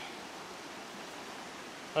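Steady, even rush of a river flowing nearby, with no distinct events.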